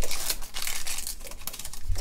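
Foil wrapper of a Pokémon booster pack crinkling as the cards are pulled out of it, in a rapid run of small crackles and clicks.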